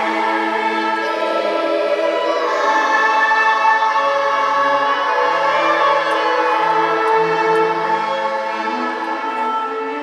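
Children's choir singing together with string instruments accompanying, in long held notes that swell a little louder a few seconds in.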